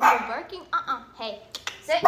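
A dog barking excitedly in about five quick, sharp barks, roughly two a second.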